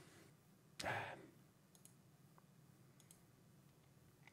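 Near silence with a few faint mouse clicks, and one short soft rustle about a second in.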